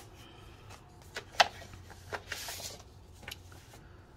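A paper mailer envelope being opened and a clear plastic sleeve of stickers pulled out: soft paper rustling with a few sharp crinkles of plastic, the loudest about a second and a half in.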